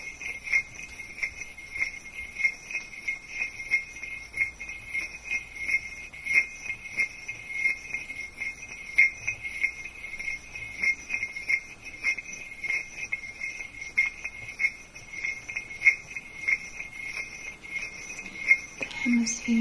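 Pieces of selenite crystal handled, tapped and rubbed together close up, making many small irregular clicks and scrapes. A continuous high-pitched tone runs under them throughout.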